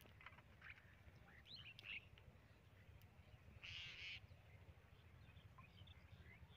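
Faint outdoor bird calls: scattered short chirps and one harsh call lasting about half a second, a little over three and a half seconds in, over a low rumble.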